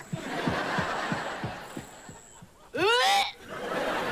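Studio audience laughing at a punchline, the laughter fading away over about two seconds. Near the end comes one short, loud vocal cry that rises and falls in pitch.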